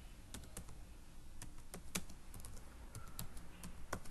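Typing on a computer keyboard: a run of about fifteen quick, unevenly spaced keystrokes as a name is entered into a text field.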